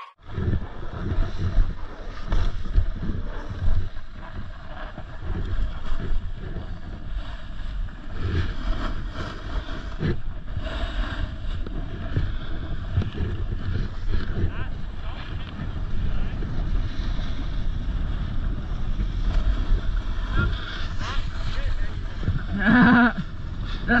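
Snowboard sliding and carving over packed, groomed snow, with wind buffeting the action-camera microphone in uneven swells. A voice calls out near the end.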